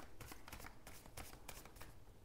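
A deck of tarot cards being shuffled by hand: a quick, irregular run of faint card flicks and clicks.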